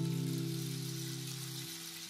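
Flamenco-style acoustic guitar music: a strummed chord rings on and slowly dies away. Its low notes stop shortly before the end.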